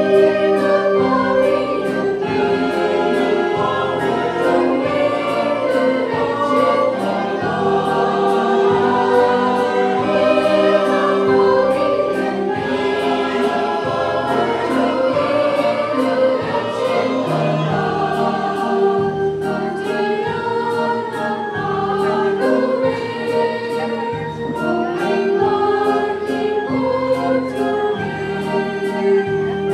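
A mixed choir of children and adults singing a Christmas carol, with instrumental accompaniment keeping a steady beat.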